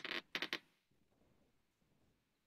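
Two brief creaking scrapes in the first half-second, then near silence.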